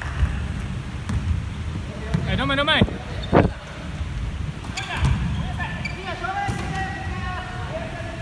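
Indoor basketball play on a wooden court: the ball bouncing and players' footfalls, with a short high squeak of shoes on the floor about two and a half seconds in and one loud knock just after.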